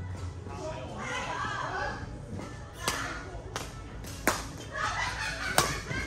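Badminton singles rally: a string of sharp racket strikes on the shuttlecock, roughly a second apart, the loudest two near the end, echoing in a large hall.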